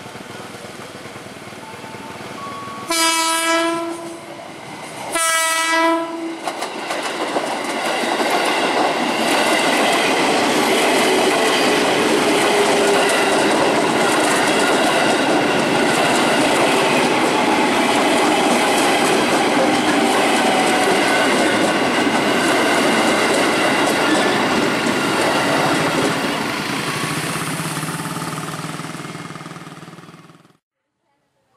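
KRL Commuter Line JR 205-series electric train sounding its horn in two short blasts, then passing close by: a long, loud rush of wheels on rail with a steady whine through it, fading away near the end.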